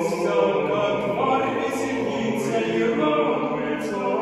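Mixed vocal quartet of two women and two men singing in close harmony without instruments, a Russian Orthodox sacred choral concerto in Church Slavonic.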